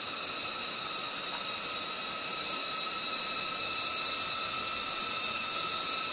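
Steady high buzzing chorus of cicadas, unbroken throughout and slightly louder in the second half.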